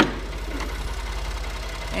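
2013 Ford F-150's twin-turbo 3.5-liter EcoBoost V6 idling steadily, with one sharp clunk right at the start as the hood is opened.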